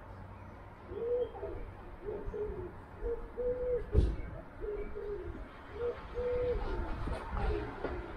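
A pigeon cooing in a series of low, rising-and-falling phrases, with one sharp thump about halfway through.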